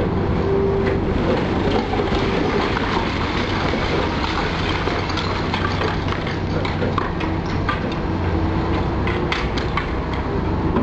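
Demolition excavator with a hydraulic crusher attachment running steadily at work, its engine hum under repeated cracks and clatter of concrete and brick being broken and falling, the knocks coming thicker near the end.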